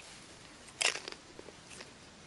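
A short crunching crackle about a second in, followed by a few fainter single clicks.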